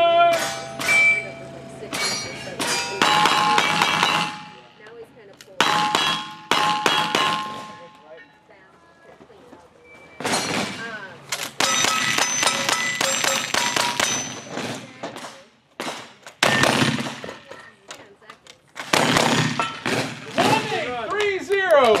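Volleys of rapid gunshots from cowboy action guns, including a lever-action rifle, with steel targets ringing on hits. The shots come in several quick strings separated by short pauses.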